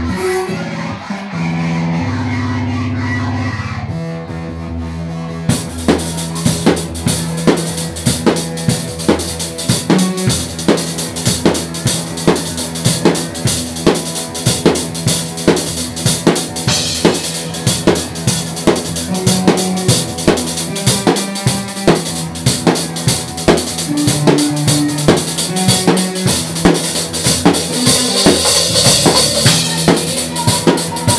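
Live band playing loud: a few seconds of held instrument notes, then the full drum kit comes in about five seconds in, with fast, dense beats and cymbals under the band.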